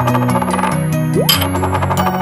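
Cartoon sound effects over children's background music: a bright, jingling shimmer that fades, then a short rising swoop a little over a second in, followed at once by another shimmer.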